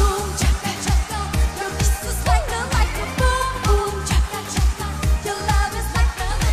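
Up-tempo pop song from Armenia's Eurovision entry: a woman singing over a steady, even dance beat.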